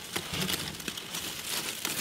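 Quiet rustling and crinkling of dry leaf litter and branches inside a terrarium as a snake hook probes among them, with a few light clicks.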